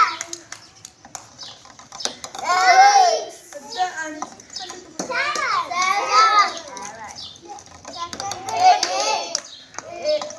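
Young children's voices shouting and chattering in three bursts a few seconds apart, with light knocks in the quieter gaps between.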